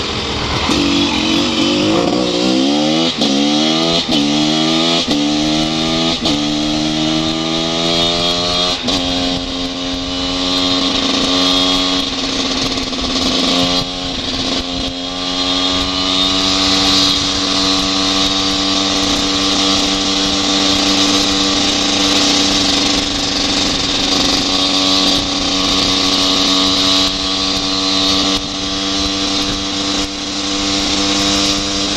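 Husaberg motorcycle engine accelerating hard through the gears: the pitch climbs and drops back at each of about four upshifts, then holds steady at cruising speed, with a brief dip and pick-up about halfway through. Wind rushing over the microphone throughout.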